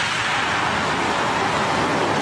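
Steady rushing noise of the Electron rocket's nine Rutherford engines firing at liftoff.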